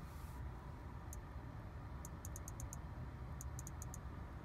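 Short, high electronic ticks from the Audi A8's touch controls giving click feedback under a finger: a single tick, then two quick runs of about six ticks each, over a steady low rumble.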